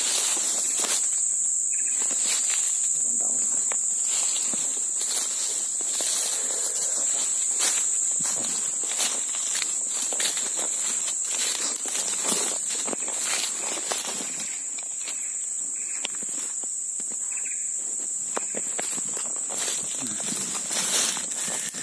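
A steady high-pitched insect drone over irregular footsteps crunching and rustling through dry leaf litter and undergrowth.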